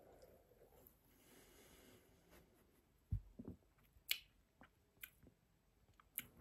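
Near silence with a few faint, short clicks and soft knocks, about three, four and five seconds in.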